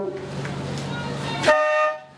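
A short horn blast about a second and a half in, one steady tone that stops abruptly, sounded as a rowing boat crosses the finish line. Before it there is a steady low hum.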